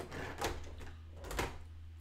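A few clicks and knocks of plastic Lego pieces being handled and set down on a table, with two louder knocks about half a second and a second and a half in.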